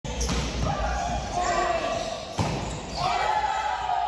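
A volleyball is struck twice during a rally, two sharp hits about two seconds apart that echo in a large gym. Players shout calls between the hits.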